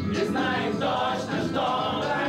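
A group of men singing together unaccompanied, several voices at once.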